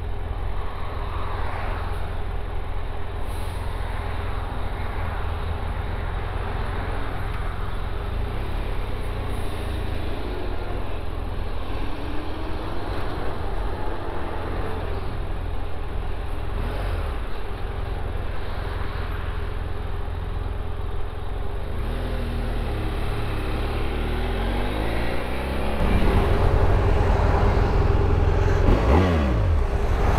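BMW F800 GS Adventure motorcycle's parallel-twin engine running in traffic, its revs rising and falling as it pulls away and slows, with other traffic around it. It gets louder a few seconds before the end.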